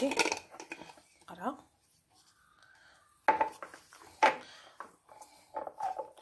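A glass jar being closed with its plastic screw lid and handled on a countertop, with a couple of sharp knocks about three and four seconds in.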